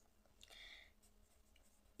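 Near silence, with one faint, short stroke of a felt-tip marker on notebook paper about half a second in.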